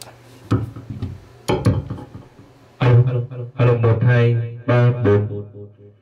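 A gold wireless handheld microphone being tested. A few handling knocks on the mic in the first two seconds, then from about three seconds in a man's voice counting into it, played back loud through the amplifier board's loudspeaker with a strong low boom under the voice.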